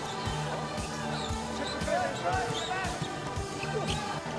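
Basketball bouncing repeatedly on a hardwood court during play, with high squeaks and steady music in the arena underneath.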